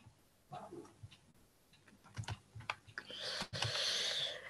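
Faint scattered clicks, then a soft breathy hiss over the last second.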